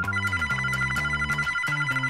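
Mobile phone ringing with a fast-trilling electronic ringtone, over soft background music.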